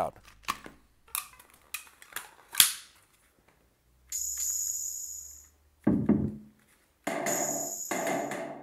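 Synthesizer notes triggered over USB MIDI by touching the thumbtack capacitive sensors of a homemade cardboard controller. A few short sharp clicks come in the first three seconds, then three separate notes that each start sharply and fade: a bright, hissy one about four seconds in, a short low one, and a fuller one near the end.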